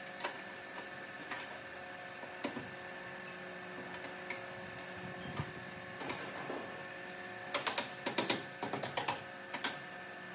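Sharp metallic clicks and taps from hand tools working the sheet-metal edge of a car's rear wheel arch, scattered at first and coming thick and fast near the end. Under them runs a steady machine hum with several fixed pitches.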